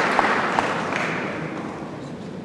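Audience applauding, the clapping dying away.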